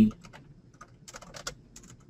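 Computer keyboard typing: a quick, irregular run of key clicks as a word is typed out.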